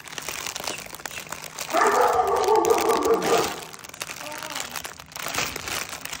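Plastic packaging crinkling as wrapped items are handled. A drawn-out voice-like sound of about two seconds is heard over it in the middle.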